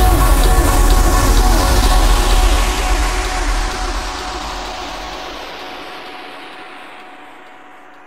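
End of an electronic dance track: the beat has stopped and a final deep bass note and a wash of noise ring out, the bass dropping away after about three seconds and the wash dulling and fading steadily toward silence.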